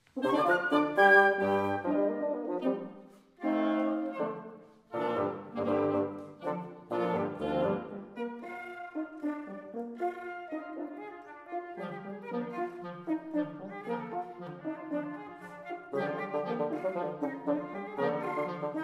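Woodwind quintet of flute, oboe, clarinet, French horn and bassoon playing live. It opens with a sudden loud attack and punchy chords broken by two short pauses in the first five seconds, then settles into a busier, softer running texture that grows louder again near the end.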